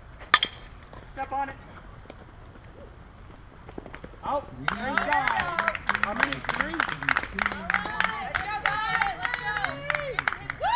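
A softball bat cracks once against a pitched ball, sharply, about a third of a second in. A short shout follows, and from about five seconds in several people shout and cheer at once, with scattered claps.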